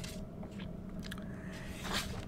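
A pause between phrases: a faint steady room hum with a few soft mouth clicks, and a breath drawn in near the end before speech resumes.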